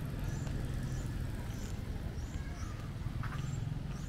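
Roadside traffic: a steady low rumble of vehicles, swelling slightly near the end, with small birds giving short high chirps about twice a second.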